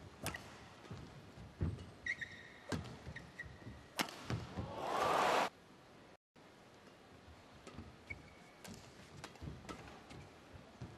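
Badminton rally: rackets strike the shuttlecock with sharp cracks several seconds apart, with players' shoes squeaking on the court mat. A short surge of noise swells about five seconds in and cuts off abruptly, followed by a few lighter hits.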